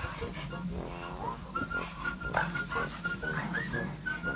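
Two Hokkaido dogs play-fighting, growling in rough bursts, with a short rising yelp about a second in. From about halfway a thin high whistled tune runs over them.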